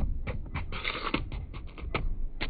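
Soccer ball rolling and bumping down a plastic playground slide toward the camera: a quick, irregular run of knocks and rattles with a short scraping rush about a second in.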